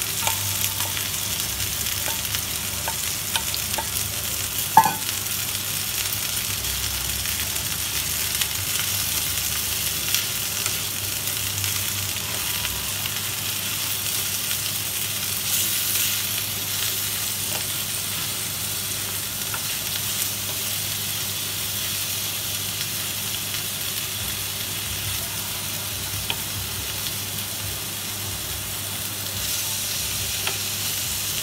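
Chicken, onions and red peppers frying in oil in a paella pan: a steady sizzle, with a wooden spoon stirring and scraping through them. About five seconds in comes a single sharp knock with a brief ring.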